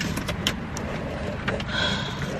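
Low, steady rumble inside a car, with a few light clicks and knocks of things being handled in the seat and a faint high tone near the end.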